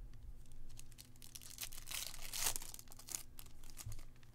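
Plastic wrapper of a baseball card pack being torn open and crinkled by hand, a burst of crackling that is loudest about two seconds in, with a few light clicks around it.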